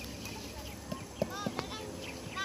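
A sharp click at the very start, then a few short dull thuds as harvested squash are tossed and caught, with voices calling out across the field.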